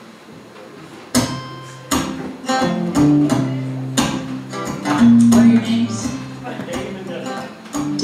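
Acoustic guitar strummed in chords, starting about a second in after a brief quiet: the opening of a song.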